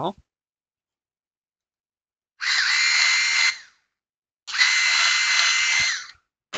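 Cordless electric screwdriver running in two short runs at a steady pitch, about a second long and then about a second and a half long, unscrewing the terminal screws on a motor-speed regulator board to disconnect a heater element.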